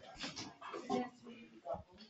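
Indistinct voices of students chatting in a classroom, quieter than the teacher's speech around it.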